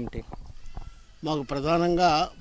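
A short pause with faint background, then a man's voice starts speaking a little over a second in, with a drawn-out vowel.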